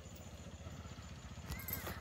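Faint low rumble of wind and handling noise on a phone microphone, with a few light clicks and a brief high chirp near the end.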